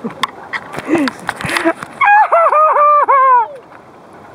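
High-pitched laughter: a quick run of about six short "ha" syllables at a steady pitch, starting about two seconds in and trailing off with a falling note. Scattered light clicks and knocks come before it.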